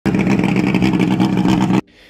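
Loud engine running at high revs, holding a fairly steady pitch, then cutting off abruptly near the end.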